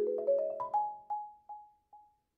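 Marimba played with four yarn mallets: a quick run of notes over lower ringing notes, thinning in the second half to one note struck three times, further apart each time, as the phrase winds down.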